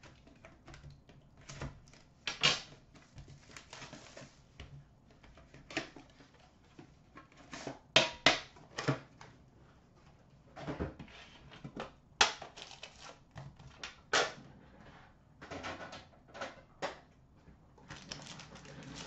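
Hands unwrapping and opening a sealed Upper Deck Premier hockey card box: plastic wrap rustling and crinkling between irregular clicks and knocks of the box being handled and set on a glass counter, a few sharper knocks about eight, twelve and fourteen seconds in.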